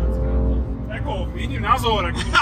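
BMW M2's straight-six engine and road noise droning inside the cabin at motorway speed: a low rumble with a steady engine note that fades within the first half second. A voice talks over it from about a second in.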